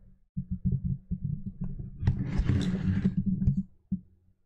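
Garbled, muffled low rumbling that cuts in and out: a voice coming through a faulty live-stream audio feed with only the lowest part of the sound getting through. A burst of hiss lasts from about two seconds in until just before the end.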